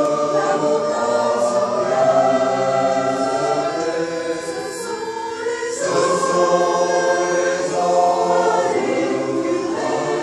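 Mixed choir of men and women singing in harmony, holding long chords; the sound softens a little past halfway, then a new phrase starts about six seconds in.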